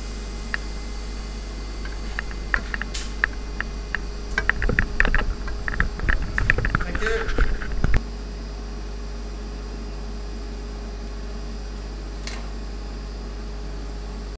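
A steady low hum, with a run of irregular sharp clicks and knocks from about two seconds in. The knocks grow denser and then stop abruptly about eight seconds in.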